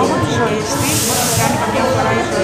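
A sharp hiss lasting about a second, starting about half a second in, over a woman's voice.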